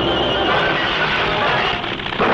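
Steady drone of a large four-engine propeller aircraft in flight, a cartoon sound effect, dipping briefly near the end.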